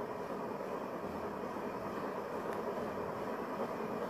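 Steady low background noise, an even rushing hiss with no distinct events.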